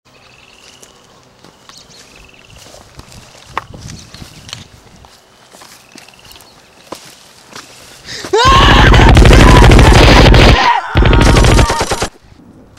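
Rapid machine-gun fire, a dubbed-in sound effect standing in for toy guns. A long burst of very fast shots starts about eight and a half seconds in; after a brief break, a second shorter burst comes near the end.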